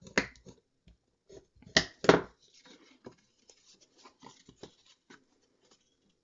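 Stiff cardstock being folded and creased by hand along its score lines, with a bone folder against the folds: two sharp snaps close together about two seconds in, then light crackles and ticks of paper.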